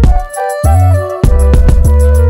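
Dark hip hop instrumental beat: long deep bass notes under a melody line, with hi-hat clicks. The bass drops out briefly about half a second in, and a quick roll of hits comes in the second half.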